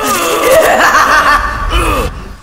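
A voice laughing menacingly over a dramatic film score.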